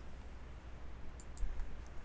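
Quiet room tone with a low hum, and a few faint, short clicks a little past the middle and again near the end.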